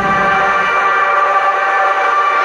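A held chord of several steady tones from the banjo band's electronic keyboard. It rings on just after the drums stop.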